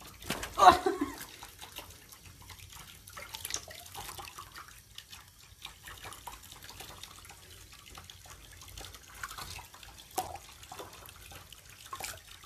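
Water lapping, splashing and dripping in a shallow tub as a hand washes a wet rabbit, in small irregular splashes. A brief louder sound comes about half a second in.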